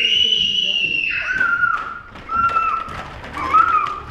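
High-pitched vocal shrieks: a long, steady squeal held for about the first second, then several shorter, lower squeals.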